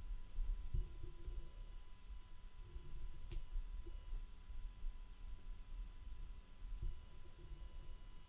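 Quiet room tone with a low steady hum and a faint high steady tone, broken by a single computer mouse click about three seconds in.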